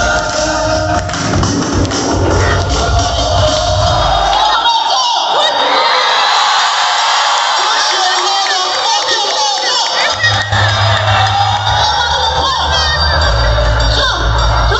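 Loud live electronic music played over a venue PA, heard from within the crowd, with the crowd cheering and shouting. The heavy bass cuts out about four seconds in and comes back in around ten seconds in.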